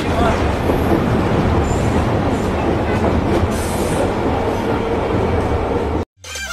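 Metro train running, heard from inside the carriage: a steady rumble that cuts off suddenly at the end.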